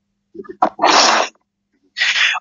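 A short, breathy burst of noise from a person at the microphone, about half a second long, just after a couple of brief low vocal sounds, heard through a Twitter Space voice stream.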